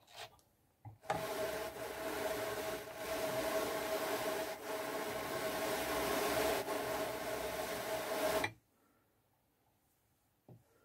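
Ashford drum carder being hand-cranked, its wire carding cloth brushing white mulberry silk onto the batt: a steady whirring rasp with a faint hum, lasting about seven seconds and stopping suddenly.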